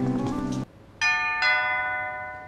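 Background music stops abruptly just over half a second in; then a two-note doorbell chime, ding then dong, rings about a second in and slowly fades.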